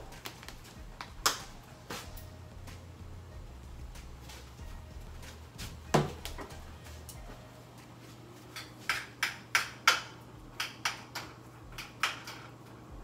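Kitchen clatter: a sharp knock about a second in, a louder one about six seconds in, then a quick run of light clicks and knocks of utensils and pans near the end, over a steady low hum.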